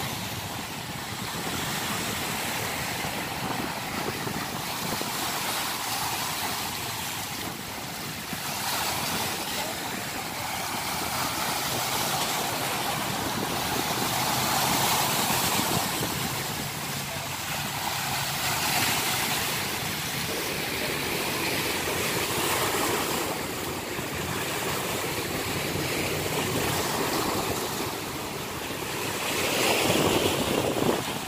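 Bay waves washing and splashing against a rock breakwater: a steady rush of water noise that swells and eases every few seconds.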